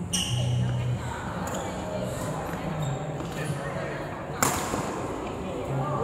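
Badminton rackets striking a shuttlecock in a rally, with a sharp hit at the start and the loudest smack about four and a half seconds in, followed by hall echo.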